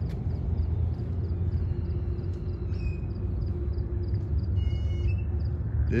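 Steady low outdoor rumble with faint high bird chirps over it, and one short clearer chirp about five seconds in.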